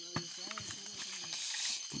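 Night insects such as crickets chirping steadily in high-pitched tones, with faint voices and a few short clicks of footsteps on a stony path.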